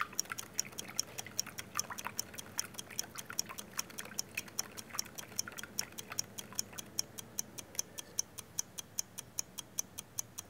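Metal spoon stirring sugar and water in a plastic cup, with faint irregular clinks and scrapes in the first few seconds. Over it runs a steady, evenly spaced ticking, about four a second, that keeps going after the stirring stops.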